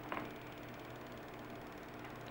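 Faint steady hum and hiss of a home-recorded narration track between sentences, with one brief soft sound just after the start.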